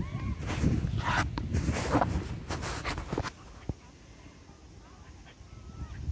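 Boxer and English Springer Spaniel puppies play-fighting on grass: scuffling and short dog noises in bursts for about three seconds, then it goes quieter.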